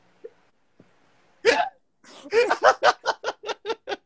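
A man laughing hard: a loud burst of laughter about one and a half seconds in, then a fast run of 'ha' pulses, about six a second.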